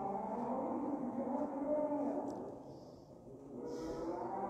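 A man's voice chanting in long, held melodic notes, with a short break for breath about three seconds in.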